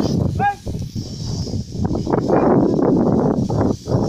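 Cattle and donkeys trampling loose straw while threshing grain, a dense rustling and crunching that grows louder in the second half. A brief high, wavering call is heard about half a second in.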